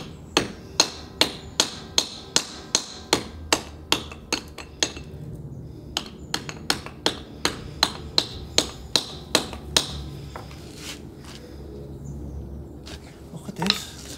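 Hammer blows on a scale-crusted immersion heater element laid on brick, knocking the limescale off to get at the element inside. Steady strokes about two and a half a second, a short pause around five seconds in, a second run, then a few lighter taps.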